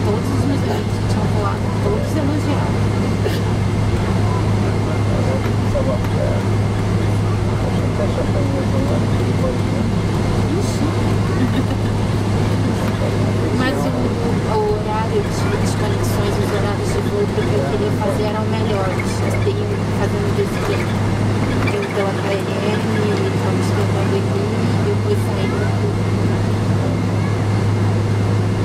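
Steady low hum inside a Boeing 777-200 airliner cabin as the plane taxis after landing, with indistinct passenger chatter underneath.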